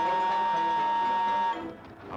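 Factory steam whistle blowing one long steady high note over an orchestral score, cutting off suddenly about one and a half seconds in.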